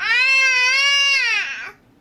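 A baby's cry: one long, high-pitched cry lasting about a second and a half, falling in pitch as it trails off.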